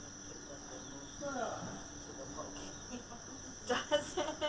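A steady, high-pitched insect chorus, like crickets, with a short falling sound about a second and a half in. Voices come in just before the end.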